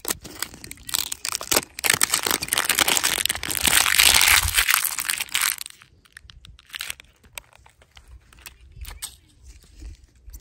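Thin clear plastic wrapping crinkling and tearing as it is stripped off a plastic surprise egg, a dense crackle lasting about four and a half seconds. After it come a few light plastic clicks as the egg is handled.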